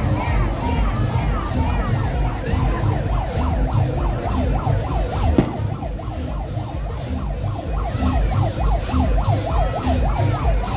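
Street parade sound: music with a heavy, regular low beat, and over it rapid, overlapping siren-like wails rising and falling several times a second, thickest in the second half. One sharp pop comes about halfway through.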